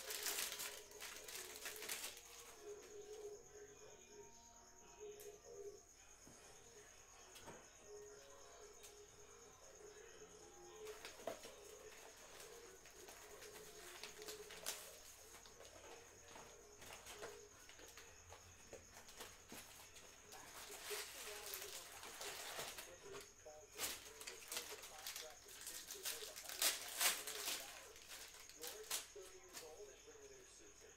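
Trading-card packs and cards handled by hand: foil wrappers crinkling and cards being shuffled and flipped in scattered bursts, busiest in the second half, over a faint steady hum.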